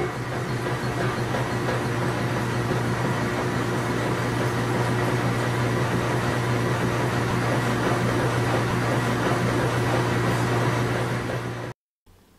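Washing machine running: a steady low motor hum over an even rushing noise, which cuts off suddenly just before the end.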